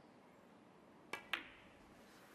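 A snooker shot: the cue tip taps the cue ball, then about a fifth of a second later the cue ball clicks sharply into a red. The second click is the louder and rings briefly.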